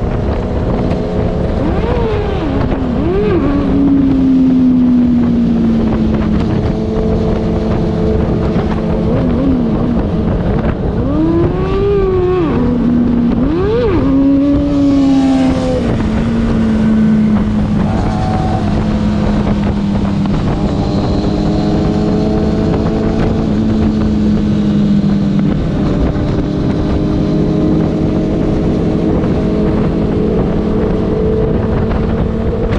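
Motorcycle engine running at road speed, with wind rushing over the microphone. The engine note rises and falls with throttle changes and gear shifts a couple of seconds in and again around the middle.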